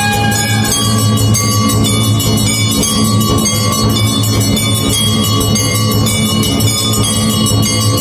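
Temple bells ringing continuously in rapid strikes during an arati, over a steady low hum.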